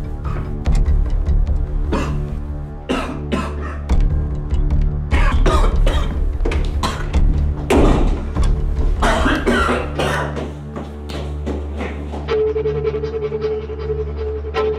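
A man coughing hard several times, choking on smoke, over a dramatic music score with a steady low drone.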